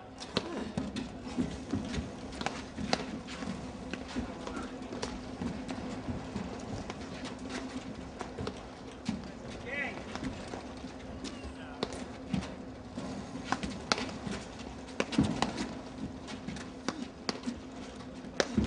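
Platform tennis rally: sharp knocks of paddles striking the ball at irregular intervals, the loudest about 15 seconds in. A steady low hum runs underneath.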